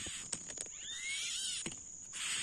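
Smooth-billed ani (Crotophaga ani) nestlings begging with a raspy hissing, with a few thin rising whistles in the middle; the hissing stops shortly before the end. A steady high-pitched whine and a few light clicks run underneath.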